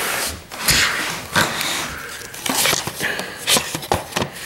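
Handling noise as the recording camera is moved and set in place: irregular rubbing and knocking on the microphone, with a sharp click just before the end.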